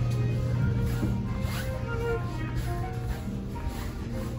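Soft background music with held, changing notes over a steady low hum inside a train carriage.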